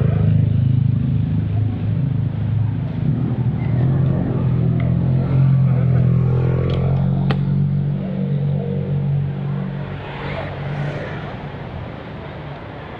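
Motorcycle engine idling steadily, fading out shortly before the end, with one sharp click about seven seconds in.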